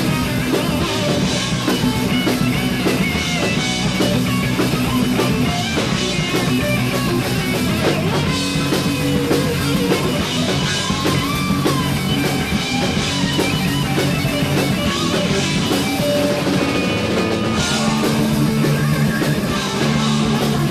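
Heavy metal band playing live with no singing: distorted electric guitars, bass and drum kit, with a lead guitar line bending in pitch over the rhythm.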